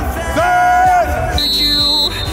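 A coach's sports whistle blown in one steady blast starting about one and a half seconds in, over background music. Before it comes a loud, drawn-out vocal call.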